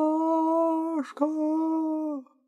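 A man's voice calling out in a long drawn-out cry held on one pitch, broken briefly about a second in and then held again. It is a theatrical imitation of a distant, echoing cry of someone searching in the forest.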